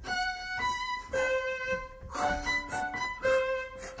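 Orchestra playing a slow melody of held notes that step from one to the next about every half second to a second.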